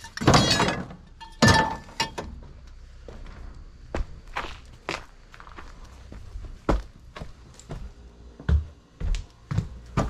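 Junk tossed into a steel roll-off bin lands with a crash, and a second clatter follows about a second and a half in, the metal ringing briefly. Then come footsteps, a string of separate thuds at uneven intervals.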